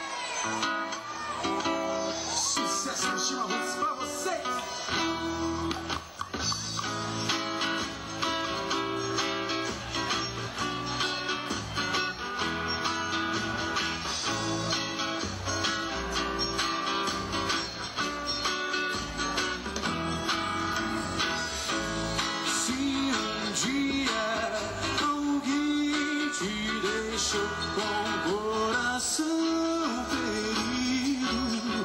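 A live forró band playing an instrumental passage, with guitar over a steady beat from the zabumba bass drum.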